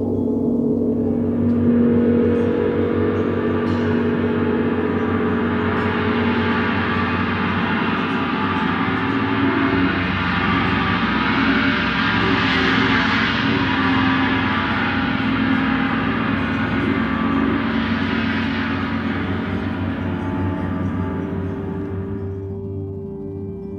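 Large gong played continuously: a dense shimmering wash of many ringing tones that swells brighter to a peak about midway and again a few seconds before the end, then eases off.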